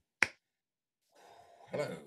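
A single sharp finger snap about a quarter second in, followed by a faint voice near the end.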